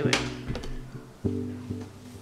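Background music of plucked string notes, with a fresh chord struck about a second and a quarter in and fading away.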